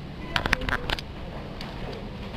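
Indoor shop background murmur, broken about half a second in by a quick run of sharp clicks and clacks lasting roughly half a second.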